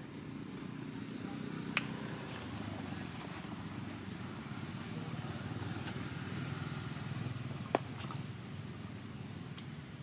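Steady low rumble of a motor engine running at a distance, swelling slightly in the middle. Two sharp clicks cut through, one about two seconds in and one near eight seconds.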